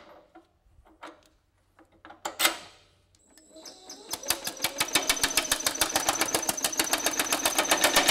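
A few clicks of tooling being handled, then the Baileigh MH-19 power hammer starts up with a planishing die and hammers sheet metal in a fast, even train of blows from about four seconds in.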